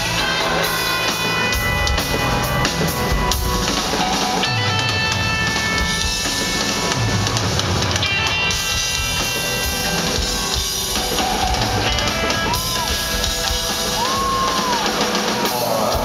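Live rock band playing an instrumental passage: drum kit, electric guitar and held keyboard chords, heard loud through the PA from within the crowd.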